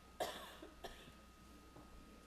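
A person coughing twice: a sharp, loud cough about a quarter second in and a weaker one just under a second in.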